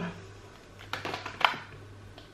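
Tarot cards being shuffled by hand: a few short snapping strokes about a second in, the sharpest about halfway through, over a low steady hum.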